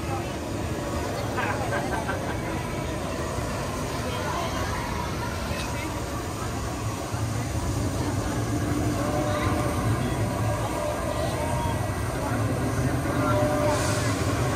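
Outdoor theme-park ambience: indistinct voices of people talking nearby, over a steady low rumble.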